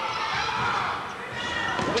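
Crowd noise in a basketball hall during live play, with the ball bouncing on the court.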